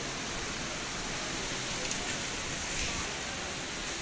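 Steady background noise of a busy indoor market arcade: an even wash of distant voices and bustle, with no single sound standing out.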